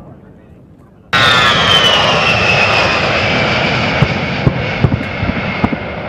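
A low rumble fades away. About a second in, the loud sound of a Fairchild Republic A-10 Thunderbolt II's TF34 turbofan engines cuts in suddenly, and its whine falls in pitch as the jet passes by. A few sharp crackles come near the end.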